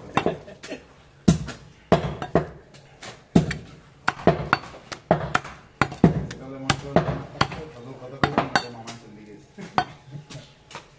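Meat cleaver chopping goat meat on a wooden log chopping block: a run of sharp, irregular knocks, one to two a second and sometimes quicker.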